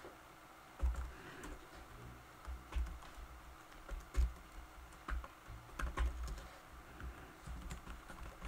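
Typing on a computer keyboard: faint key clicks in short, irregular runs of keystrokes with pauses between them.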